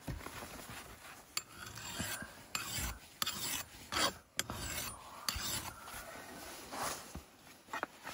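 Mill bastard file rasping across the steel edge of an axe-head hide scraper in a series of short strokes, sharpening the blade.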